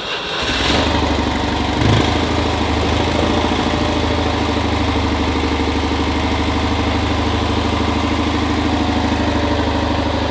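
1959 Citroën 2CV's 425cc air-cooled flat-twin engine on a cold start with the choke pulled: the starter cranking gives way to the engine catching about half a second in. A brief surge follows about two seconds in, then it settles into a steady idle.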